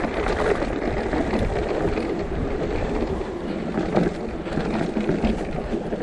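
Mountain bike tyres rolling fast over a loose, rocky gravel track, with a continuous dense rattle and rumble of stones and bike parts.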